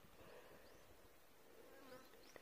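Near silence: faint outdoor ambience with a faint insect buzz and a few faint, short, high chirps.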